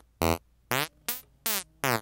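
Mojito virtual-analog synthesizer playing a fart-like preset on its own, dry: a string of five short pitched notes, about two a second, several sliding down in pitch.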